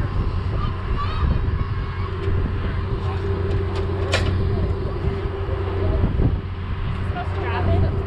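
Steady low motor hum with a faint constant tone, and a short sharp hiss about four seconds in.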